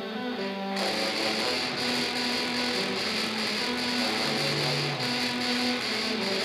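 Brass quartet of two euphoniums and two tubas playing metal-style music through amplifiers, with long held low tuba notes underneath. About a second in, a denser, harsher sound suddenly comes in over them.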